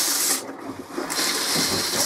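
RV toilet rinse water hissing into the bowl while the foot pedal is held part-way down. The water briefly quietens about half a second in, then runs again.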